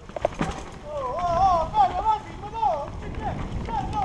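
Mountain bike rattling and clattering over rocks and loose dirt on a steep descent, with a steady rush of wind on the helmet camera's microphone. A voice calls out in a wavering high pitch through the middle.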